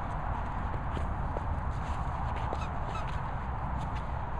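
Steady low rumble of wind and handling on the microphone, with a couple of faint, short high squeaks about three seconds in.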